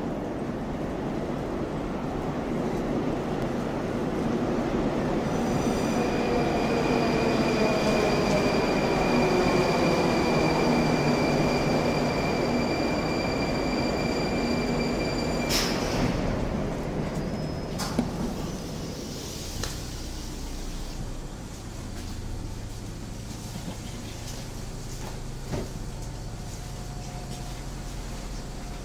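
A Moscow metro Rusich train running into the station and braking to a stop. Its rumble builds, with a whine falling in pitch as it slows and a steady high squeal over it, ending in a clank about halfway through. The sound then drops to a quieter low hum with a sharp click.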